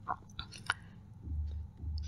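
Faint mouth noises from a close-miked reader in a pause between sentences: three short clicks of the lips and tongue in the first second, then a brief low hum.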